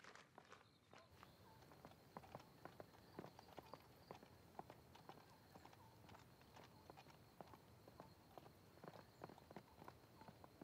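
Faint, irregular footsteps and small taps over near silence, with a faint steady high tone underneath.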